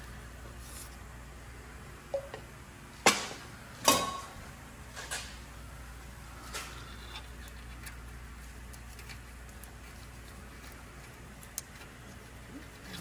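A few short, sharp clicks and knocks of hand work on the truck's exhaust under a steady low hum, the two loudest about 3 and 4 seconds in and smaller ones scattered through the rest.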